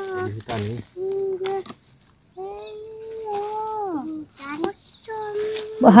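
Young children's voices making short wordless calls and hums, with one long held call in the middle that drops away at its end. A steady faint high-pitched whine runs beneath them throughout.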